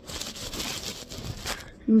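Fabric rustling and brushing close against the phone's microphone for about a second and a half, ending with a single click.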